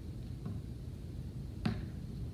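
A plastic glue bottle being handled and capped: a faint tap, then one sharp click near the end, over a steady low hum.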